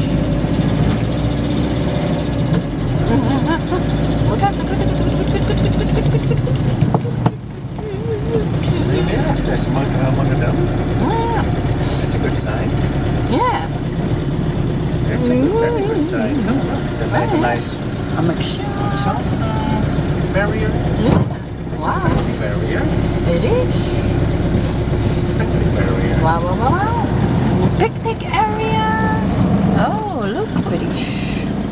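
Campervan engine running at low speed while driving, heard from inside the cab as a steady low hum. The engine sound dips briefly twice, about seven seconds in and again about twenty-one seconds in.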